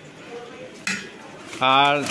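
A metal spoon clinks once against an aluminium cooking pot about a second in, followed by a drawn-out spoken word near the end.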